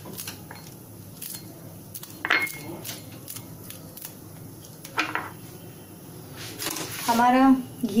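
A small kitchen knife slicing a green chilli held in the hand, with light scattered clicks and taps as the blade cuts and the pieces drop into a small bowl, and a couple of louder knocks about two and five seconds in.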